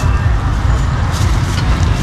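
Steady low rumble of street traffic and motorbike engines close by, with a brief crinkle of plastic bags about a second in.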